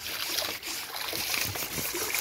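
Shallow stream water splashing and dripping in a run of small splashes as a person scoops it up with her hands to wash herself.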